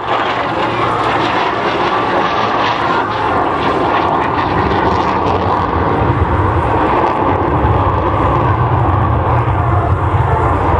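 Lockheed Martin F-35A's Pratt & Whitney F135 afterburning turbofan at high power with the afterburner lit, loud steady jet engine noise. The deep low rumble grows heavier in the second half.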